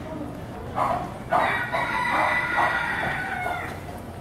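A rooster crowing: a short note, then one long drawn-out call lasting about two seconds that fades away.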